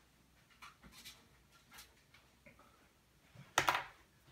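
Faint rustling and small clicks of markers being handled while a fresh marker is fetched, with one brief, louder sharp sound near the end.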